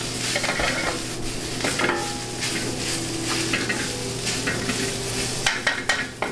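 Spinach sizzling as it wilts in clarified butter in a hot sauté pan, turned over with metal tongs. A few sharp clicks come near the end.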